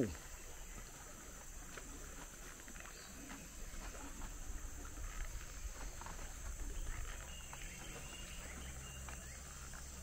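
Quiet outdoor ambience while walking: soft, scattered footsteps and camera-handling noise over a low rumble, with a faint steady high hiss throughout.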